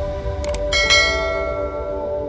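A mouse-click sound effect, a quick double click about half a second in, followed at once by a bright bell chime that rings out and fades: the notification-bell ding of a subscribe-button animation, over soft background music.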